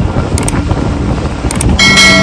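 Wind buffeting the microphone on a boat under way, over a steady low rumble of the boat and water. Two short clicks come about half a second and a second and a half in, and a bright ringing tone starts near the end.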